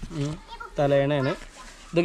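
Only speech: a man talking, in two short phrases.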